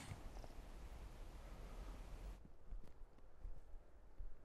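Faint outdoor background noise: a low rumble with a light hiss that drops away suddenly about two and a half seconds in.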